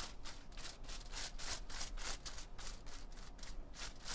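Tint brush swept back and forth over hair laid on aluminium foil, painting on lightener in quick scratchy strokes, about five a second.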